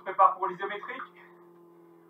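A man's voice speaking briefly for about a second, with a steady low electrical hum underneath.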